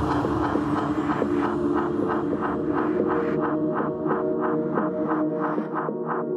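Dark progressive psytrance: a held synth chord under a gated synth pulsing about four times a second, as a noise sweep fades away. The deep bass drops out about five seconds in.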